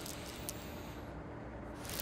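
Faint steady hum of a sci-fi starship-interior ambience bed, a low rumble with a thin steady tone, and one brief click about half a second in.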